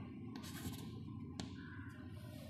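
Chalk writing on a chalkboard: faint scratching strokes, with one sharp tap about one and a half seconds in.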